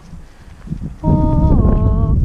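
A trainer's drawn-out, sung voice command to a lunging pony, two notes falling in pitch, starting about halfway through. From the same moment a loud low wind rumble buffets the head-mounted camera's microphone.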